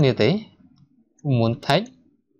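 A man speaking in two short phrases, with one sharp click about three quarters of the way through: a computer mouse click.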